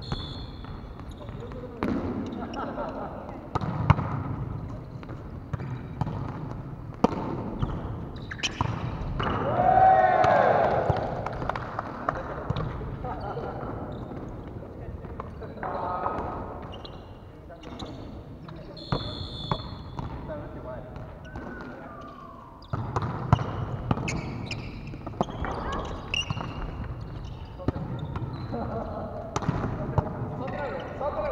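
Indoor volleyball play in a reverberant gym: sharp slaps of the ball being struck by hands at irregular moments, mixed with players' calls and shouts that echo in the hall. The loudest moment is a drawn-out shout about ten seconds in.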